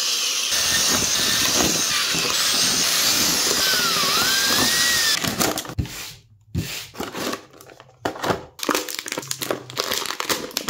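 An electric drill runs steadily for about five seconds and then stops. After that come short bursts of crinkling and clicking from a clear plastic blister tray being handled.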